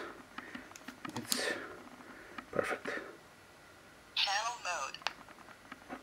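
Baofeng DM-5R handheld radio being switched on with a UV-5R battery fitted: a few handling and knob clicks, then about four seconds in a short, tinny synthesized voice prompt from the radio's small speaker, in two parts, showing that the radio powers up on the swapped battery.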